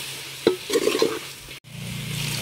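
Steel spoon stirring and scraping brinjal, onions and spice powder frying in an aluminium pot, with one sharp clack of the spoon against the pot about half a second in. Near the end the sound cuts off abruptly and a thick liquid begins pouring into the pot.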